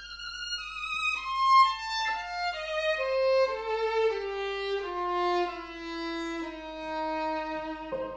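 Violin playing a slow, lyrical phrase that falls step by step from high to low, with a Viennese Baptist Streicher grand piano of 1870 accompanying softly underneath.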